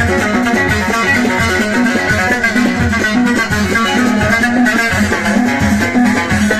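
Moroccan watra, the long-necked skin-bellied lute of the Abda folk tradition, plucked rapidly in a lively tune with a steady rhythmic pulse.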